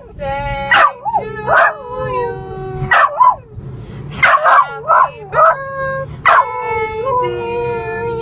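A small dog howling along in a run of short, wavering yowls and yips, ending in one long held howl near the end.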